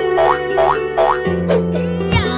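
Background music with held notes, overlaid with cartoon sound effects: three quick rising boing-like sweeps in the first second, then a falling swoop about one and a half seconds in as the paper doll topples over.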